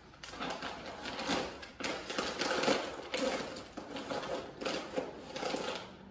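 Plastic food packaging crinkling and rustling as snack bars and bags of trail mix are stuffed into an Ursack AllMitey fabric bear bag: a busy, irregular run of crackles and small clicks.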